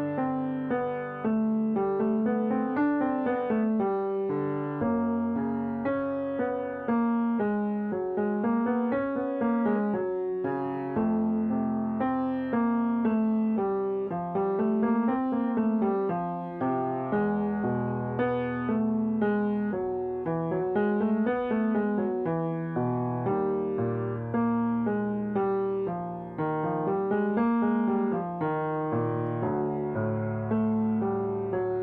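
Yamaha piano playing a tenor agility warm-up accompaniment: quick runs up and down the keyboard over held bass notes, the figure repeating as the bass moves to a new note every several seconds.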